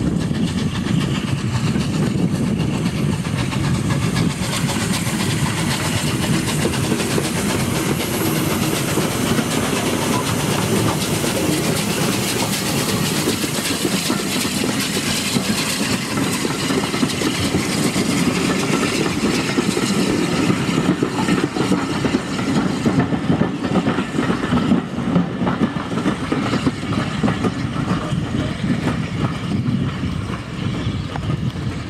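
Bulleid Battle of Britain class three-cylinder 4-6-2 steam locomotive 34070 Manston running past under steam with its train of coaches, loud and steady.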